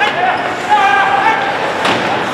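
Ice hockey play in an arena: players' indistinct shouted calls ringing in the hall, with one sharp knock of stick, puck or boards near the end.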